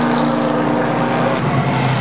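Several stock car engines running together as the pack laps the asphalt oval, a steady engine drone.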